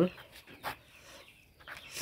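Faint scratching of a pen writing on notebook paper, a few short strokes.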